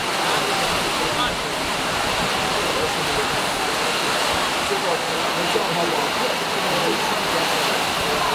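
Heavy rain falling as a steady, unbroken rush, with the indistinct chatter of a crowd underneath it.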